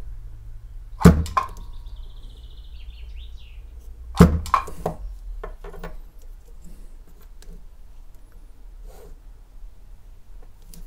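Pedal-triggered battery spot welder firing through copper electrode pens onto a metal strip on 18650 cells: two sharp cracks about three seconds apart, each followed by a few smaller clicks, with a short high warbling tone after the first.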